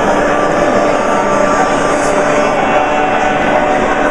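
Dense crowd chatter of many voices in a crowded, noisy lobby, a steady roar with no single voice standing out.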